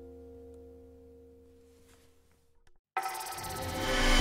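Acoustic guitar's final chord and harmonics ringing out and slowly dying away to near silence. About three seconds in, loud outro music cuts in abruptly.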